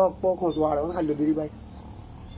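Crickets chirping in a steady, rapid, evenly spaced high pulse that runs throughout. A man's voice talking over it fades out about halfway through.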